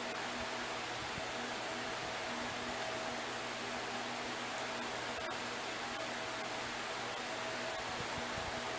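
Steady, even hiss with a faint low hum underneath: the room's background noise, with no distinct event.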